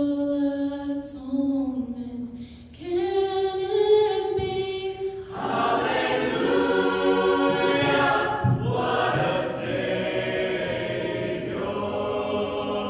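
Solo voices sing held phrases into microphones, the second phrase higher than the first; about five seconds in, the full mixed choir comes in and sings together.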